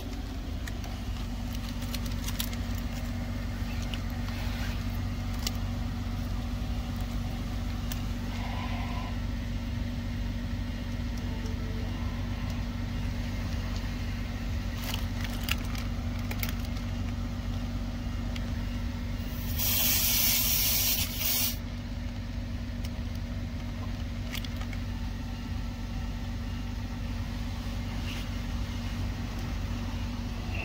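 A steady motor hum throughout, with a loud hiss of compressed air lasting about two seconds around two-thirds of the way in, as the coiled air hose's chuck is pressed onto the tire's valve stem.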